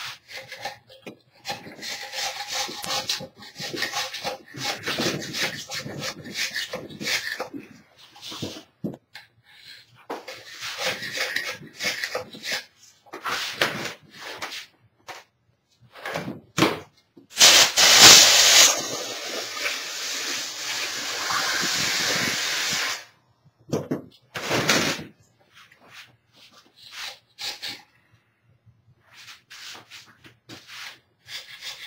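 Hand tool scraping and chipping at hardened plaster in many short strokes, working a stuck plaster plug loose from its mould. A loud, steady hiss comes in just past the middle, loudest at its start, and runs for about five seconds.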